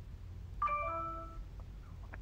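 A short electronic chime of several steady tones sounding together, starting about half a second in and lasting under a second.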